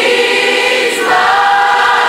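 A congregation of women singing a gospel praise song together, holding long notes, the melody stepping up to a higher held note about a second in.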